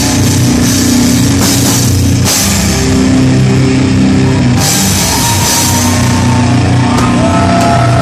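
Heavy metal band playing live and loud: distorted electric guitars and bass chugging low riffs over a drum kit with crashing cymbals. A guitar plays bending high notes near the end.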